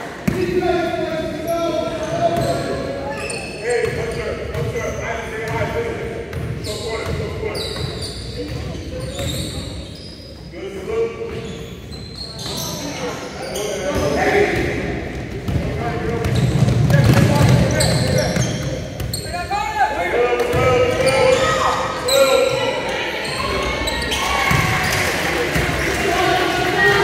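Basketball being dribbled on a hardwood gym floor, a run of sharp bounces, amid the overlapping voices of players and spectators in the gym.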